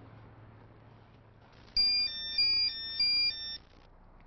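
Mobile phone ringtone: a short melody of electronic beeps at a few alternating pitches, repeated three times over about two seconds, starting a little before halfway in.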